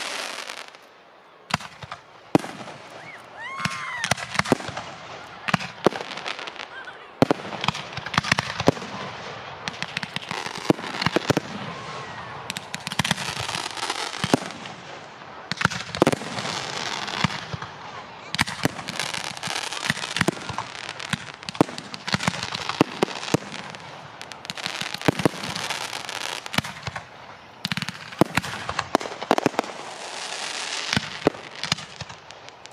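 Aerial fireworks display: a dense barrage of shell bursts, sharp bangs at irregular intervals over continuous crackling, with a brief lull about a second in.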